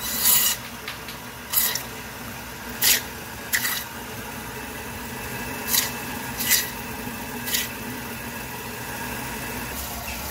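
Meat band saw running with a steady hum, its blade cutting through chicken bone seven times in short, sharp cuts, most of them in the first eight seconds.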